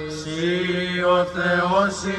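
Male voices chanting a Greek Orthodox memorial prayer in Byzantine style, a melody moving over a low note held steady beneath it.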